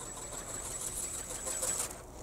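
Faint, steady mechanical whine of a small electric ornithopter's motor and flapping gear in flight, with a thin high tone that cuts off just before the end.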